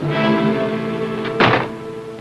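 Orchestral film score holding tense sustained chords, cut through by a single sharp thud about one and a half seconds in.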